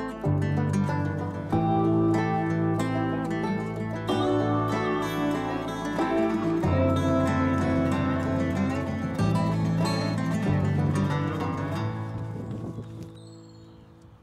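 Background music: plucked-string notes over a bass line that changes every second or two, fading out near the end.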